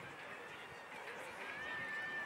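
Faint outdoor ambience with distant children's voices. A single steady high tone starts about three-quarters of the way in and holds.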